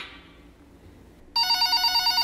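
After about a second of quiet, a telephone starts ringing: an electronic ring made of several high tones trilling quickly and evenly, the signal of an incoming call.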